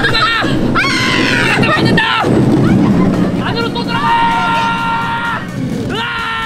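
Wheeled luge carts rumbling down a concrete track, with long high-pitched shrieks from a rider: one falls in pitch about a second in, and another is held steady in the second half.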